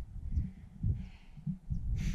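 Wind buffeting the microphone on an open ridge, with a runner's hard breathing after stopping: a breath comes through about a second in.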